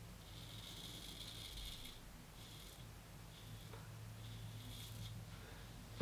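Straight razor with brass scales scraping through lathered stubble on the cheek, a faint rasp in short strokes: one longer stroke over the first two seconds, then several shorter ones.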